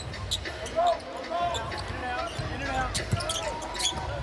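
Basketball bouncing on a hardwood court, a few sharp thuds amid voices and the hum of an indoor arena.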